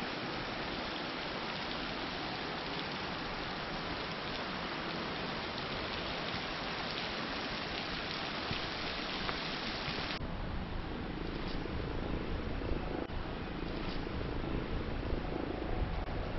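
Wind on the microphone outdoors: a steady even hiss that changes abruptly, about ten seconds in, to a lower, gustier rumble that grows louder toward the end.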